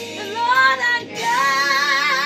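Gospel song: a high solo voice sings long held notes with vibrato over instrumental backing. One phrase ends just after the start and a new long note begins about a second in.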